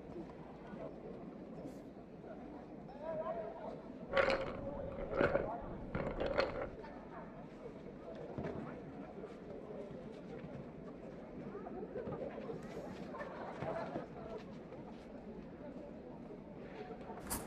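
Distant voices and shouts from people on a sports field, heard through an open window over a steady murmur. Three louder, sharper sounds come between about four and six and a half seconds in.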